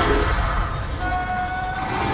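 Cinematic trailer sound design: a deep rumbling whoosh with a few steady, held music tones entering about halfway through.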